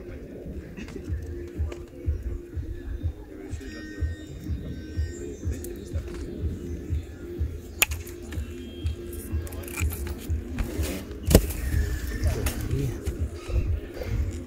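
Metal snips cutting a plastic window-adjoining profile, giving two sharp snaps, the louder one about 11 seconds in. Background music and low wind rumble on the microphone run underneath.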